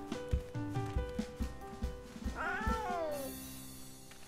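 A cartoon wild kitten's meow: one call that rises and then falls, about two and a half seconds in, over gentle background music with a light beat that fades near the end.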